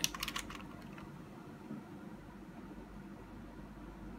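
A quick run of small clicks from a hard plastic toy being handled near the start, then faint room noise.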